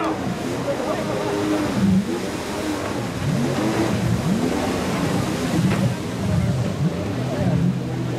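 Jet ski engine revving, its pitch rising and falling again and again as the craft turns, with people's voices alongside.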